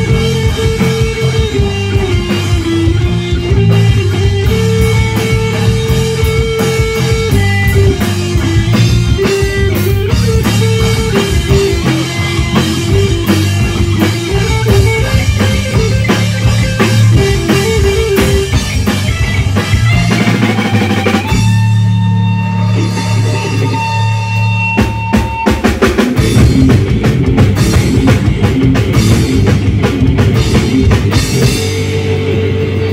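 Live rock band playing an instrumental passage on electric guitar, bass guitar and drum kit. About 21 s in the drums drop out, leaving a few held guitar notes, and the full band comes back in about five seconds later.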